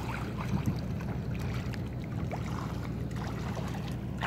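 Steady low rumble of the open river air, with faint splashes and small clicks of water scattered through it.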